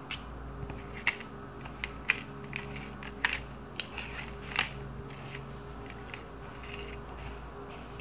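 Cards being handled and set down on a table: about ten light, sharp clicks and taps at irregular intervals, over faint steady background music.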